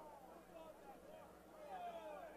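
Near silence with faint, distant voices.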